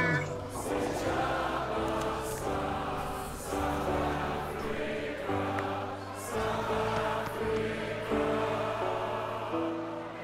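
Choral music with voices holding long notes that change every second or so over a steady low bass.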